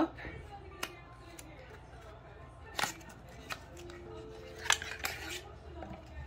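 Handling the small package of a nail-art brush to take the brush out: a few scattered sharp clicks and rustles, over faint background music.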